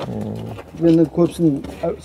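A man's voice: a low drawn-out vocal sound at the start, then speech in short phrases.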